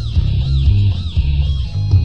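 Band music from an avant-garde rock demo: a bass-heavy guitar riff with a high swooping sound repeating about twice a second, the pattern breaking off near the end.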